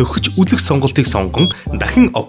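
Speech: a narrator talking in Mongolian, with one short high beep about one and a half seconds in.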